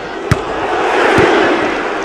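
Football stadium crowd noise swelling into shouting as play reaches the penalty area. A single sharp thud comes about a third of a second in.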